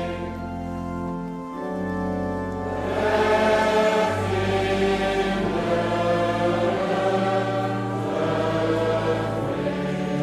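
Church congregation singing a psalm slowly to church organ accompaniment, each note long and held, with the organ's bass changing every second or two.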